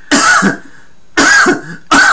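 Two loud, harsh coughs about a second apart: a man imitating someone's night-time coughing fit.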